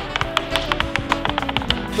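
A gemstone die tumbling and clattering down the long Hoard Board dice tray, a rapid run of irregular clicks, over background music.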